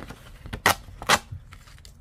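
Two short, sharp snaps of stiff paper about half a second apart, with a few fainter clicks, as scratch-off lottery tickets are torn off the pack.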